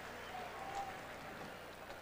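Faint, steady crowd noise from the stadium stands.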